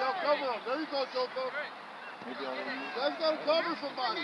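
Several people talking and calling out at a distance, words unclear.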